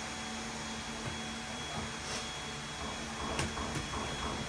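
Scissors cutting the tape on a cardboard dinnerware box and the box being handled. Two sharp clicks near the end. A steady mechanical hum runs underneath.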